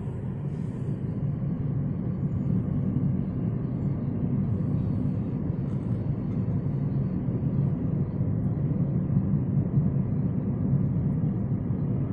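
Steady road and engine rumble heard inside a moving car's cabin as it drives along a highway.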